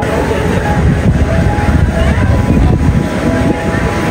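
Loud, unsteady low rumble of outdoor street noise, with voices mixed in.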